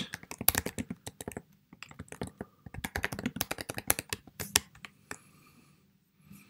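Typing on a computer keyboard: a quick run of keystrokes that thins out and stops about five seconds in.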